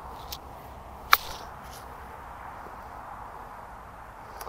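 A golf club striking the ball in a short chip shot: one sharp click about a second in, over faint outdoor background.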